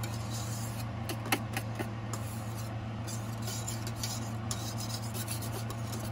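Wire whisk beating a liquid egg mixture in a stainless steel bowl, the wires scraping and clicking irregularly against the metal. A steady low hum runs underneath.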